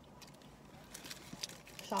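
Faint, soft clicks and rustles of someone eating French fries, with a voice starting right at the end.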